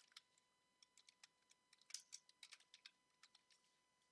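Faint typing on a computer keyboard: irregular keystroke clicks in quick runs.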